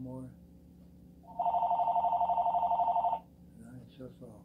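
Electronic telephone ringing: one warbling two-tone ring about two seconds long, starting a little over a second in.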